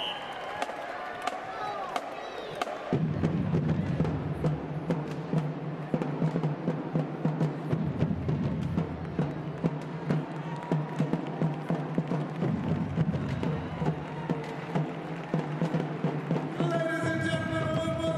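High school marching band drumline playing a rhythmic cadence, with heavy bass drums and rapid sharp strikes. The drums come in about three seconds in and keep a steady beat.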